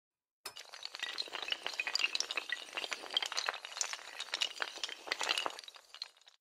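Sound effect of many small hard tiles clattering and clinking in a dense, continuous run, starting about half a second in and tailing off near the end.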